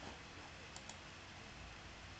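Two quick, faint computer mouse clicks a little under a second in, over a low steady background hiss.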